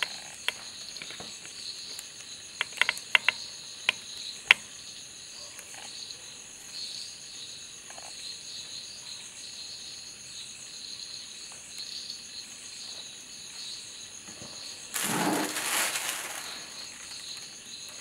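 Steady high chirring of crickets in the background, with a few sharp clicks a few seconds in and a short rustling burst near the end.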